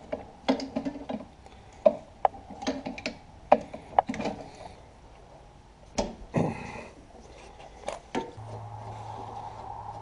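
Adjustable wrench clinking and knocking against a tractor's hydraulic line fittings, a string of irregular sharp metal ticks and clatters, with paper towels rustling around the fitting. A steady low hum comes in near the end.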